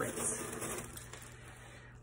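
A hand scooping small crushed-stone grit out of a mesh net bag: stones clicking and rattling together with a rustle of the netting, loudest in the first half second and then fading.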